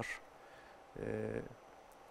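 A man's short, drawn-out hesitation sound, 'e', about a second in, between pauses in speech, with quiet room tone around it.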